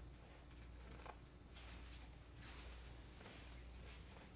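Near silence over a low steady hum, with a few faint, brief rustles of natural-fibre rope being drawn through the ties of a harness.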